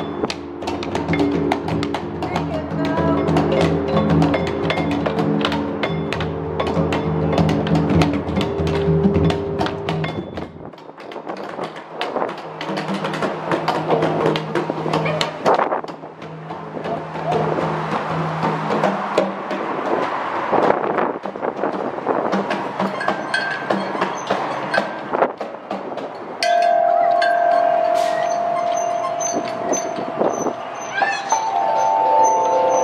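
Children striking the metal bars of a large playground metallophone with mallets: a run of ringing notes. This gives way to irregular knocks, and near the end a tubular chime is struck and rings on one steady tone.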